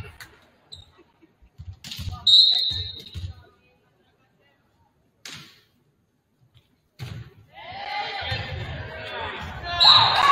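Referee's whistle in a gym at a volleyball match: one blast of about a second. A single hit of the ball follows a couple of seconds later, then players and spectators shouting and calling, and a short second whistle at the very end, ending the rally.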